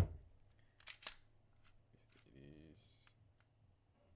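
Glock 19 pistol being handled for a safety check: a sharp metallic click at the start, two more clicks about a second in, then a short rasp near the end as the slide is pulled back and locked open to show an empty chamber.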